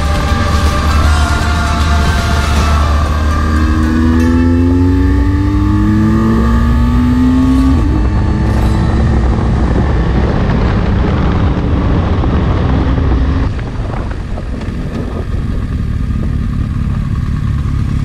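Motorcycle engine heard from onboard at speed, pulling up through the gears: its pitch climbs twice and drops at each upshift, over a heavy low rush of wind. It eases off a little after the midpoint.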